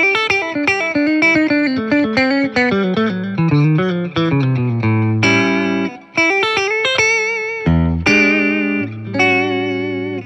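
Caldwell Closet Classic S-style electric guitar played through an amp on its bridge pickup with compression, giving a clean country twang. It plays a quick run of single notes, then, about five seconds in, held notes and chords that waver in pitch, with a brief break near the middle.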